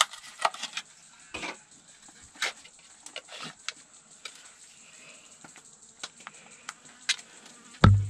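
Plastic tubs and packaging being handled and opened with a knife: a scatter of small sharp clicks and taps, with a louder knock near the end. A fly buzzes faintly around.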